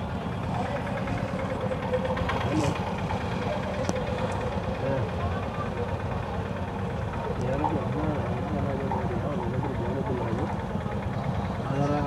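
Vehicle engine idling steadily, heard from inside the vehicle's cabin, with voices talking over it.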